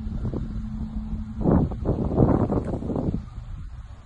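Wind rumbling on the microphone, with a thin steady low hum for the first second and a half and a louder gust from about a second and a half to three seconds in.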